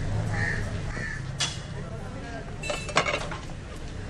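A bird calls twice in the first second. Then come sharp clicks and taps from the cobbler's hand tools working a leather patch onto a motorcycle boot: one click about a second and a half in, and a short cluster near three seconds.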